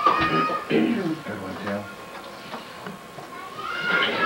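Indistinct voices at a table, with a short high-pitched vocal sound at the start and someone clearing their throat about two seconds in.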